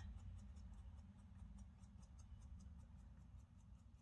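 Faint, quick scratching of a potter's scratch tool scoring the top of a clay wine-glass stem, about five light strokes a second, roughing the joint so the cup will stick to it.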